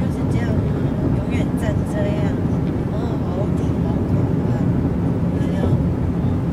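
Steady road and engine noise inside a car's cabin at highway speed, with a few brief, faint voice sounds over it in the first half and again near the end.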